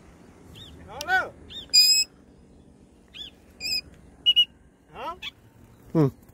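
Shrill parrot calls during free flight: a handful of short squawks and whistles, the loudest about two seconds in, with faint small-bird chirps between them.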